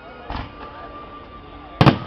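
Aerial fireworks shells bursting: a smaller bang about a third of a second in, then a much louder, sharp bang near the end.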